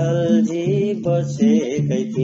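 Nepali folk song music: a low accompaniment alternates between two notes in a steady repeating pattern, under a wavering melody line.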